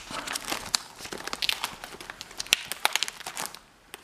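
Clear plastic sleeve pages of a ring-binder album crinkling and crackling as they are turned by hand, in a run of irregular small clicks that drops away briefly near the end.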